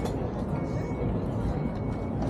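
Busy outdoor street ambience: voices of nearby passers-by, footsteps about twice a second, a low traffic rumble, and faint music.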